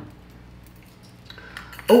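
Metal bangle bracelets clinking lightly against each other as they are handled and set down, a few faint clinks in the second half.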